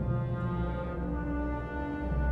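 Orchestral film-score music: low brass holding long, dark notes over a deep bass, with the chord shifting about a second in.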